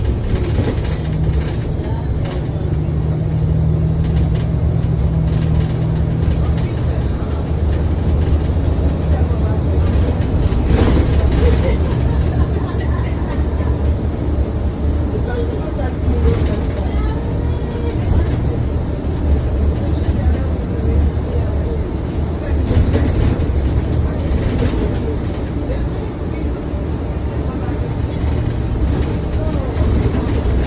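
Cabin sound of a New Flyer XDE40 hybrid diesel-electric bus pulling away from a stop and driving on: a steady low drone from the drivetrain and road. A steady hum sits over the drone for the first several seconds, then fades as the bus gets under way.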